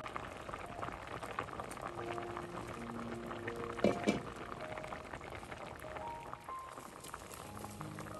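Pot of vegetable soup at a rolling boil, bubbling and popping steadily. Two sharp clicks close together about four seconds in.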